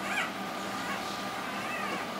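Newborn puppy crying with two short high-pitched, wavering squeals, one at the start and one near the end.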